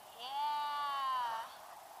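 A single high-pitched vocal whoop about a second long, rising then gently falling in pitch, over a steady rush of wind past the microphone.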